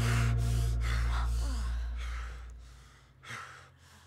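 A person breathing hard in quick gasps, over a low held music drone that fades out about three seconds in.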